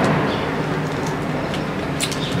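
Low engine rumble of a passing vehicle, loudest at the start and easing off a little.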